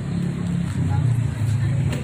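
A steady low engine rumble, like a motor vehicle running nearby.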